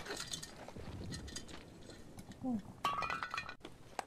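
Metal canteen clinking and scraping against stones as it is picked up and handled, with a brief metallic ring about three seconds in.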